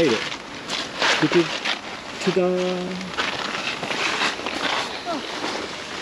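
Creek water running steadily, with a few short scuffs and knocks.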